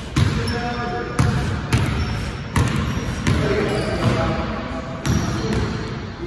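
Basketball bouncing on a hardwood gym floor in play, sharp thuds about once a second, with players' voices calling out around it, echoing in an indoor gym.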